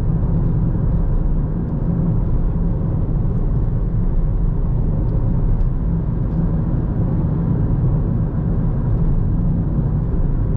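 Inside the cabin of a 2013 Ford Fiesta with the 1.0 EcoBoost three-cylinder turbo petrol engine, driving at a steady pace. A steady low rumble of engine and road noise runs throughout, with no gear changes or revving.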